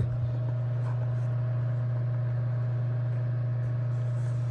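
Steady low hum of a room heater running, with a faint higher tone over it.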